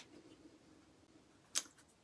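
Quiet room with paper being handled, and one short, sharp handling sound about three-quarters of the way through as the paper sentiment strip is moved.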